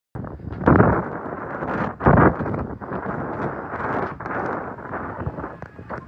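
Wind buffeting the microphone in gusts over a steady rushing noise, with two louder gusts in the first couple of seconds.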